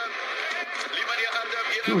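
Thin-sounding background speech coming through a loudspeaker, lacking the low end of a voice in the room, during a short pause in close-up talk.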